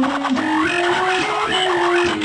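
Electric guitar playing a melodic line of sustained single notes that slide up and down between pitches.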